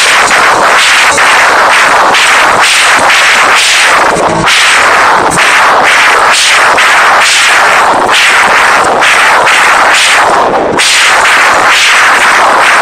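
Live rock band playing very loud: drums, guitars and bass in one dense wall of sound with sharp drum hits throughout. It is heard through an overloaded phone microphone, so it is heavily clipped and distorted.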